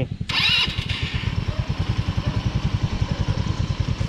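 Small ATV engine running with a steady low pulsing throb. About half a second in there is a brief high-pitched rising whine lasting under a second.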